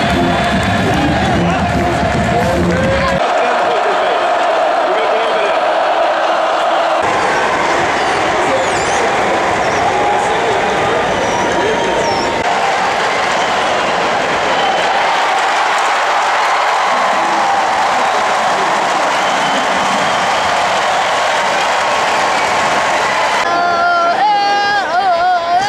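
Loud stadium crowd noise, many voices talking and cheering at once, with abrupt changes in sound a few seconds in where the clips are cut together.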